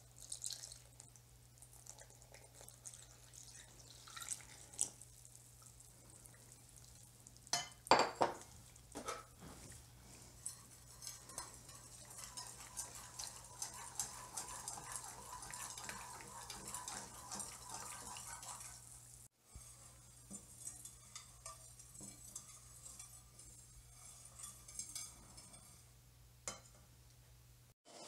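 A wire whisk stirring rice-flour batter in a bowl, with rapid light clinks of the whisk against the bowl. There are a few sharper knocks about eight seconds in, and the stirring runs thickest in the middle stretch.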